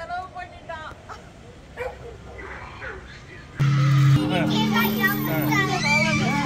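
Faint voices at first, then about three and a half seconds in, loud music starts suddenly: a held low chord with a voice over it.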